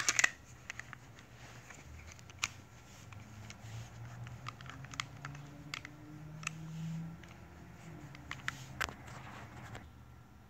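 Small sharp clicks and taps from a Beretta 9000S polymer-framed pistol being handled just after reassembly. There is a quick cluster of clicks at the very start, then single clicks every second or so.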